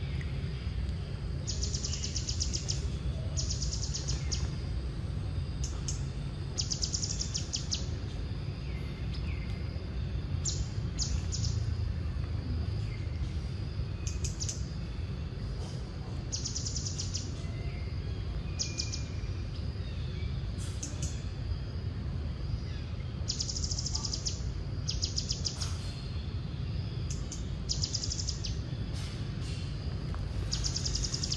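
Outdoor forest ambience: short high-pitched trills, each about a second long with a fine rapid pulse, come every few seconds over a steady low rumble.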